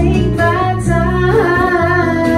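A woman singing held, gliding notes over acoustic string accompaniment, with plucked strings and guitar playing underneath.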